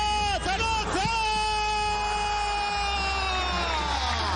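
A male Arabic football commentator's excited short calls, then, about a second in, one long drawn-out shout held for nearly three seconds with its pitch slowly sinking: an elongated goal call as the ball goes into the net.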